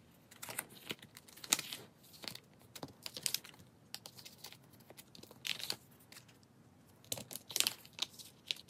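Plastic binder sleeve pages crinkling and rustling as photocards are slid in and out of their pockets, in short scattered rustles, a few louder than the rest.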